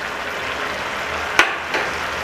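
Thin chilli and soy sauce with spring onions bubbling and sizzling in a nonstick pan, a steady hiss, with one sharp click a little past halfway.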